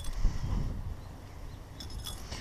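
A towel being rubbed over a wet German shepherd's fur and paws, a soft rustle over a low rumble on the microphone. There is a short bump about a quarter second in and a light metallic jingle near the end.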